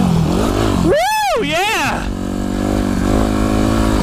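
Yamaha YZ250F four-stroke single-cylinder dirt bike engine running under the rider on a trail, its pitch dipping briefly just after the start and then steadying. About a second in, the rider gives a high rising-and-falling whoop, then a shorter second one.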